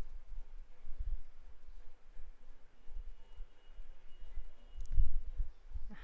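A pause on a video call with no one speaking: only low, uneven rumbling noise from an open microphone, swelling briefly about a second in and again near the end, with a faint thin tone for about a second midway.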